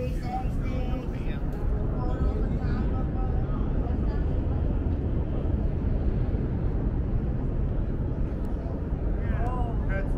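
Wind buffeting the microphone on an open-air rooftop deck, a steady low rumble, with faint voices in the first few seconds and again near the end.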